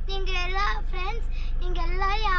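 A young girl singing a few long, held notes in a sliding melody, over the steady low hum of a car's cabin.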